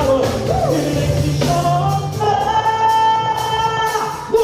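Gospel vocal group singing live with a band. About halfway through, a voice holds one long high note to the end.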